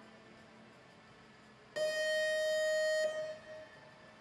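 Show-jumping start buzzer signalling the rider to begin the jump-off: one steady, bright tone held for just over a second, starting a little before the middle and cutting off suddenly.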